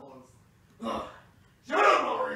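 A person's voice: a short gasp-like burst about a second in, then a loud vocal outburst near the end.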